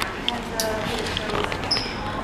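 Indistinct low talk at a hotel reception counter, with a few light knocks and clicks and a brief high beep near the end.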